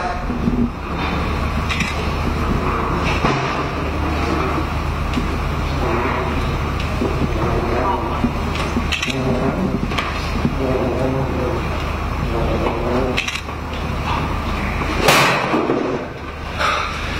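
Indistinct voices of people talking, over a steady low hum, with a short louder noise near the end.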